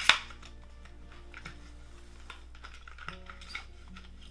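Plastic false-eyelash packaging being opened and handled: one sharp snap at the start, then a scatter of small clicks and crinkles.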